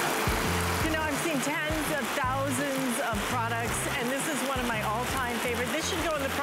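Water sprayed as artificial rain falling on an open umbrella canopy: a steady hiss that starts suddenly, with background music and a bass pulse playing over it.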